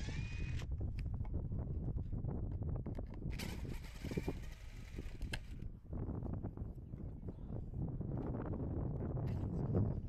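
Cordless drill-driver running in short bursts while backing screws out of a window frame on a wooden hull: a brief whine right at the start, then a longer run of about two seconds a few seconds in. In between are small knocks and a low rumble from handling.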